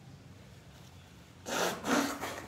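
Two short, breathy bursts from a man, about a second and a half in, made with his hand held over his nose and mouth, after faint room hiss.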